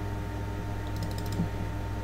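A few faint, quick computer input clicks about a second in, over a steady low hum.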